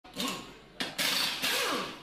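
Logo-intro sound effects: a run of quick whooshes, each starting suddenly and fading, with swooping pitch inside them.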